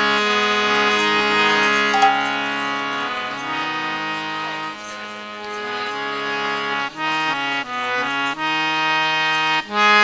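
Harmonium playing held, droning notes that soften, then a melody of separate, changing notes from about seven seconds in.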